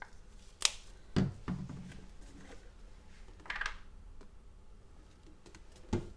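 Sporadic handling of plastic paint cups and bottles: a sharp click, a dull knock a moment later, a brief scraping rustle midway, and another click near the end.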